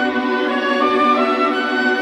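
Orchestral background music of long held notes, like bowed strings, with one line stepping up in pitch about a second in.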